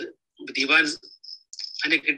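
A man speaking Malayalam in short phrases with brief pauses.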